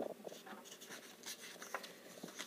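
Faint papery rustle with a few light taps as a paper flash card is lifted and slid off a stack of cards.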